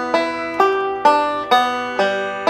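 Recording King M5 five-string resonator banjo picked slowly: single plucked notes at an even pace of about two a second, each left ringing into the next.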